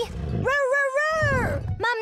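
Cartoon brachiosaurus voicing one long pitched call that rises and then falls, with a second call starting near the end, over background music.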